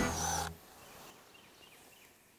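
A louder sound with a steady high tone cuts off about half a second in. What follows is near-silent outdoor ambience with a few faint chirps.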